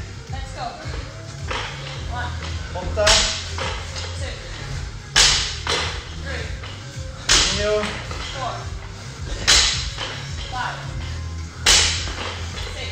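An athlete doing burpees over a barbell, hitting the rubber gym floor with a sharp slap about every two seconds, five times, over background music.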